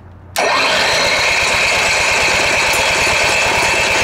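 Cummins Onan RV generator's small gasoline engine being cranked by its electric starter, starting abruptly about a third of a second in and going on steadily with a fast, even pulse and a high whine. The generator is refusing to start despite being primed.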